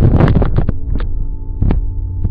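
Loud low rumbling with a few sharp knocks in the first second or so, settling into a steady low hum with a faint tone over it.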